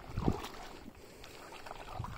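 Footsteps sloshing through shallow water over pebbles, with a heavier step about a quarter of a second in.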